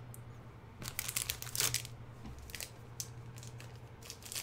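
Paper trading cards and booster-pack packaging being handled: a run of light rustles and crinkles about a second in, then a couple more near the three-second mark.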